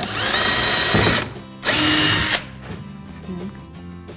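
Cordless drill-driver running in two bursts, the first about a second long and rising in pitch as it spins up, the second shorter, as it drives a screw into a wooden board.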